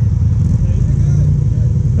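ATV engine idling with a steady low rumble.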